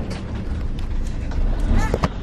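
Motorhome driving along a road, heard from inside the cab: a steady low engine and road rumble.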